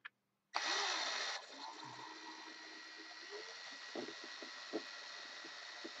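Cordless drill-driver motor running, spinning a hook to twist two fine resistance wires together. It starts suddenly about half a second in, runs loudest for about a second, then carries on more quietly and steadily with a thin steady whine.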